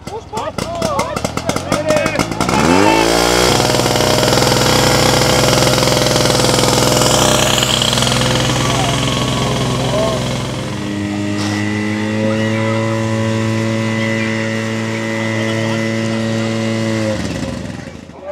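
Portable fire pump's petrol engine starting with a rapid clatter, catching and revving up within about three seconds, then running at high, steady revs. About eleven seconds in its note changes, and it runs on until it cuts out near the end.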